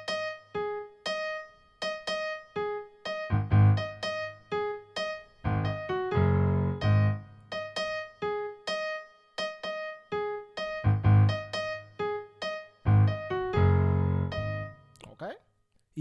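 Piano played slowly with both hands: a repeating syncopated riff with a low left-hand A-flat/G-flat bass rhythm under right-hand E-flat and A-flat notes. The notes stop shortly before the end.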